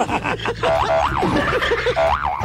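A man laughing at the microphone while a comic sound effect plays over it, its pitch wobbling quickly up and down twice.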